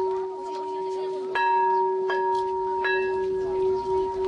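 A struck metal bell ringing steadily, with three fresh strikes about three-quarters of a second apart starting about a second and a half in.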